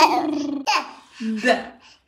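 Baby laughing in several short bursts.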